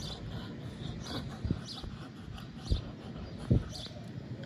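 A Doberman Pinscher puffing out three short, low breaths as its jaws are held open for a teeth check.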